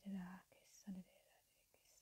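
A woman's praying voice trailing off, then a couple of soft whispered syllables about a second in, followed by near silence.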